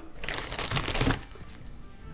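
Cellophane cigar wrapper crinkling and crackling as it is handled, for about a second, then dying away.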